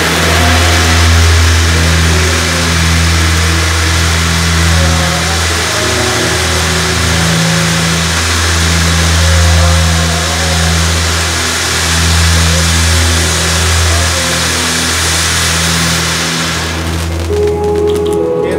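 Background instrumental music with long held low bass notes that shift every couple of seconds and a quiet melody above, under a steady hiss that fades out about seventeen seconds in.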